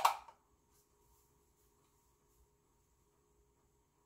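A spice shaker jar shaken once sharply at the start, followed by a few faint light shakes, then a quiet kitchen with a faint steady hum underneath.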